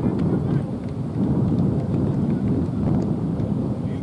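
Wind buffeting the camera microphone, a low rumble that swells and eases.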